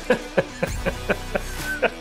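Men laughing hard: a steady run of short 'ha' pulses, about four a second.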